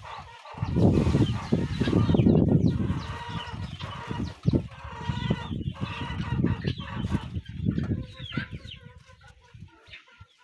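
Chickens clucking in the background, with loud low rushing noise in bursts over them, strongest in the first few seconds and again in the middle, dying down near the end.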